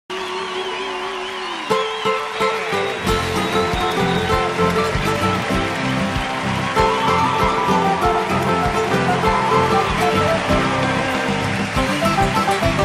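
Live band playing the instrumental introduction of a huayno, with guitar and drum kit. It opens on long held notes, then the full band and drums come in within the first two seconds and carry on with a steady beat.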